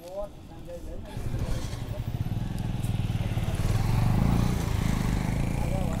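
A motorcycle engine running close by, its low pulsing note building from about a second in and loudest around four seconds.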